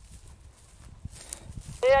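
Low rumble of wind on the microphone, with no distinct event, then a man's voice starting loudly near the end.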